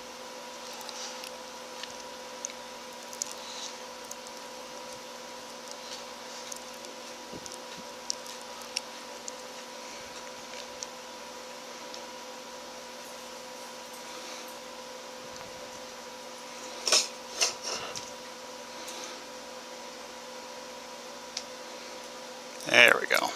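Soldering lamp wires: faint scattered ticks of wire and soldering iron being handled over a steady hum, with two short louder noises about seventeen seconds in.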